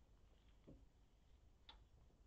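Near silence, with two faint clicks about a second apart.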